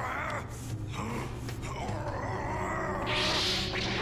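Cartoon soundtrack: background music under a character's straining voice, then a rushing noise effect about three seconds in as the figure splits into copies.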